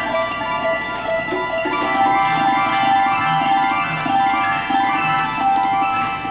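21-string harp guitar played live in quick, flowing runs of plucked notes that step up and down, over lower bass-string notes.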